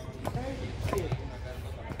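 A man's voice counting the salsa beat in Spanish ("siete"), with the thuds of dancers' feet stepping on the tile floor.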